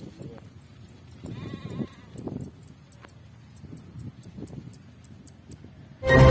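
A flock of small livestock bleating: one clear, wavering bleat about a second in, with shorter, fainter calls scattered through.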